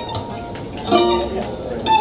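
Loose plucked strings on an acoustic guitar rather than a song: a single note rings and fades, then a sharp pluck sounds near the end, with low voices.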